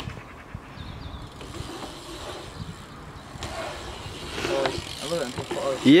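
BMX bike tyres rolling across a concrete skatepark bowl, a steady rumble, with voices in the background in the second half.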